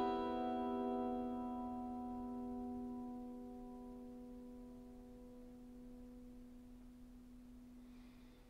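The final strummed chord of a Walden G630 CE cedar-top acoustic-electric guitar, heard through a Fishman Loudbox Mini amplifier, ringing out and slowly fading away as the song ends. The higher strings die first and one low note lingers longest.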